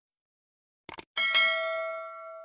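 Two quick mouse-click sound effects about a second in, then a bright notification-bell ding that rings on and slowly fades: the click-and-bell effect of a subscribe-button animation.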